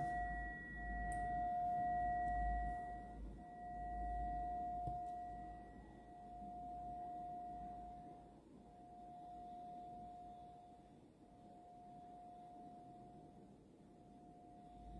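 A sustained, bell-like ringing tone with a fainter higher overtone. It swells and fades every two to three seconds and slowly dies away.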